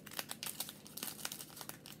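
Thin plastic packaging crinkling as it is handled close to the microphone, a run of irregular small crackles.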